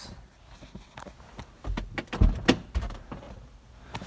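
Handling and movement noise: a few sharp knocks and bumps with rustling, bunched together a little past the middle.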